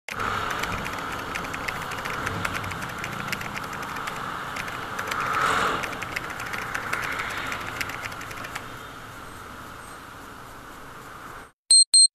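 Motorcycle riding in city traffic: steady engine and road noise with small ticks, swelling briefly about halfway and easing off later. Near the end it cuts off suddenly, followed by short electronic beeps.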